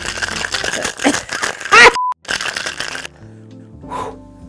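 Ice rattling hard in a cocktail shaker, dense and fast, stopping about three seconds in. Near the two-second mark a short falling pitched whoop and a brief steady beep cut in, over background music.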